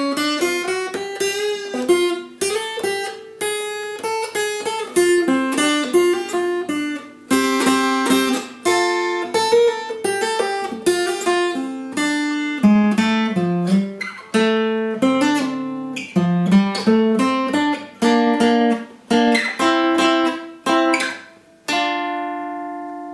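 Guitar solo picked note by note on an Ibanez PF15ECE electro-acoustic guitar: a single-line melody with hammer-ons, pull-offs and slides, played in several short phrases with brief gaps.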